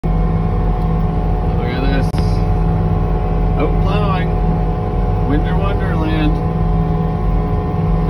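Engine of a heavy snowplow machine droning steadily, heard from inside its cab.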